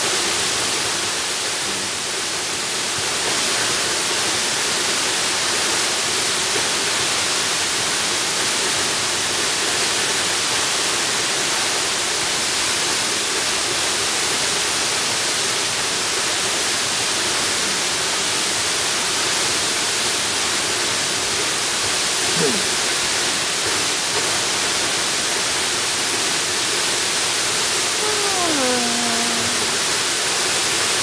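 A tall waterfall pouring steadily: an even, unbroken rush of falling water, heavy in hiss.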